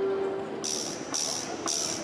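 Hand percussion shaken in a steady beat, about two short jingling strokes a second, starting just over half a second in. At the start, a held electric-guitar chord dies away.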